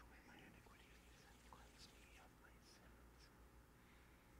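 Near silence: very faint whispering, the priest's quiet prayers said under his breath at the altar during the preparation of the gifts, over a low steady hum.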